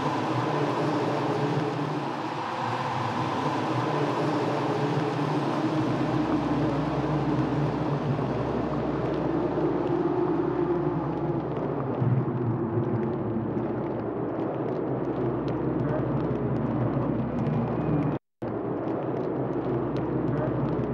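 Steady rumbling background noise, broken by a brief gap of silence near the end.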